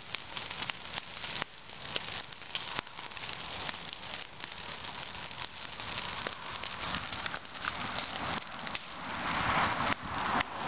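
A burning pile of dry Christmas trees and brush crackling and popping steadily over the hiss of the flames. A louder rush of noise swells near the end.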